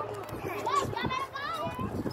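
Young children's voices babbling and calling out in high, gliding pitches, without clear words.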